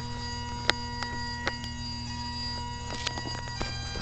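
Bagpipes sounding a steady drone chord with a long held note, broken by a few sharp clicks.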